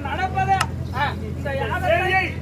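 Voice of a performer delivering therukoothu stage dialogue in Tamil, over a steady low hum, with one sharp click about half a second in.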